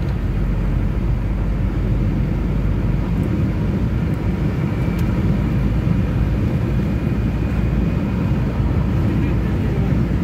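Steady engine and road noise heard from inside a car's cabin while it drives at speed, with a faint high whine in the second half and a single sharp click about five seconds in.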